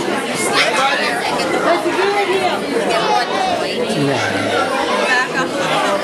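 Many children and adults chattering at once in a school gym, their voices overlapping so that no words stand out.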